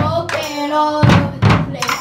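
A children's rock band playing live: drums struck hard with sticks, several heavy hits less than a second apart, while young girls sing together into microphones between the hits.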